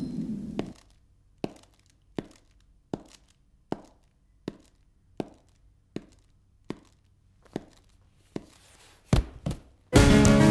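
Footsteps of shoes on a hard floor at an even walking pace, about one step every three-quarters of a second, then two louder thumps close together near the end.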